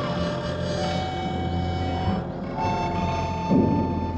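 Harmonica played slowly: a few long held notes, each stepping higher, with a short, louder rough burst near the end.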